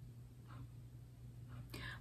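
Quiet pause in a small room: a faint steady low hum, with soft breath sounds and a breath drawn in near the end just before talking resumes.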